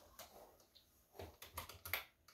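Computer keyboard keystrokes, soft and scattered, with a quick run of several near the end.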